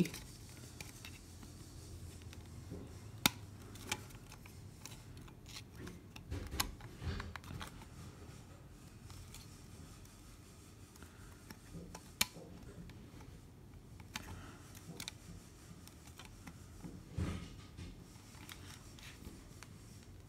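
A hard plastic phone case being pried off a phone by hand: slow fiddling with scattered sharp plastic clicks and scrapes, and a few dull knocks.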